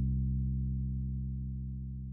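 A low sustained drone in the film's score: several steady low tones held together, slowly fading away.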